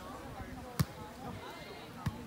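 A volleyball struck by a player's hand mid-rally: one sharp slap a little under a second in, over faint distant voices.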